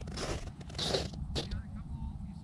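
Wind rumbling on the microphone, with two short rushes of hissing noise and a brief spoken "yep" near the middle.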